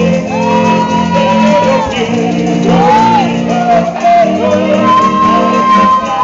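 Piano accordion playing sustained chords under a loud singing voice that holds long notes, one early and one from about four and a half seconds in, with short gliding phrases between.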